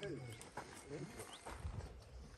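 Faint voices of men talking in the background, with a couple of short, high rising chirps.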